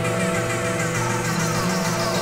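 Ambient electronic music played on synthesizers: held pad tones over a slowly stepping bass line, with repeated falling sweeps in the upper register.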